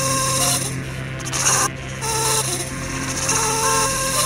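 Electronic music track: a steady low bass drone under short, repeating synth notes at several pitches, with a raspy high noise texture that drops out briefly around the middle.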